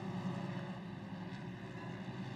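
Engines of Pro Mod side-by-side UTVs racing on the dirt track, a faint, steady low drone.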